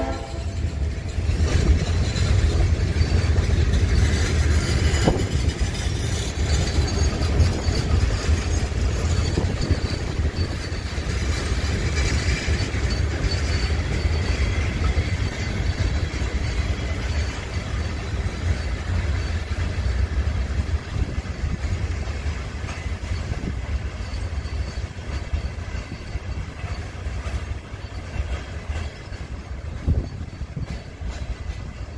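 Passenger coaches of a departing train rolling past on the rails: a steady low rumble that fades over the last several seconds as the train moves away.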